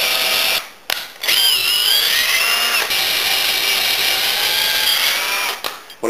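Cordless drill-driver with an 8 mm wood bit boring through a green hazel pole, run in two bursts: a short stop under a second in, then a longer run whose whine wavers in pitch under load before it stops near the end. It is run in bursts because chips can't clear properly from green wood.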